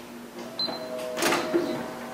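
Ricoh Aficio 2238C colour copier powering up: a short high beep, then its motors start with a steady hum, with a few mechanical clicks.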